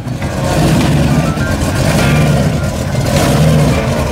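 A T-bucket hot rod's engine running loud and rough as the car pulls slowly forward, swelling a few times as it is blipped.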